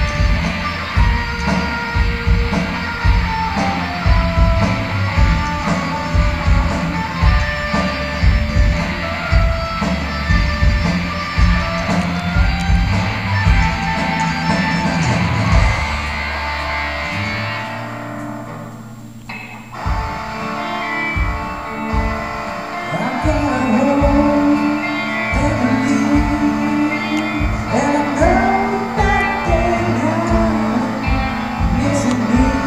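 Live rock band playing: electric guitars, bass guitar and drum kit. About seventeen seconds in, the band drops to a brief quieter passage, then builds back up with held bass notes and melodic lines over the drums.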